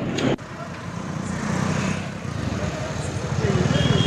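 Outdoor street noise with an engine running, its low, rapid pulsing growing louder toward the end, and faint voices in the background.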